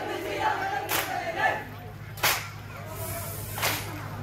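Onamkali dancers clapping their hands in unison: three sharp group claps about a second and a half apart, at about one, two and a quarter, and three and a half seconds in. A group of men's voices calling out at the start fades away after about a second and a half.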